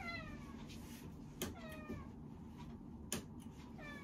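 A domestic cat meowing three times. Each meow slides down in pitch. Two sharp clicks fall between the meows.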